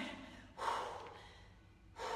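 A woman's single forceful breath out, about half a second in, fading away over about a second: the effort of a held dumbbell exercise.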